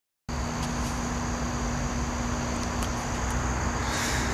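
Steady outdoor background noise, starting a moment in: a low rumble with a steady low hum and a thin, high-pitched steady whine over it.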